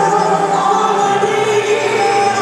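Live gospel music: a woman's lead vocal with choir-like voices over a band of bass guitar, keyboard and drums, singing in long held notes.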